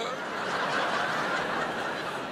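A large audience laughing together, a dense wash of crowd laughter.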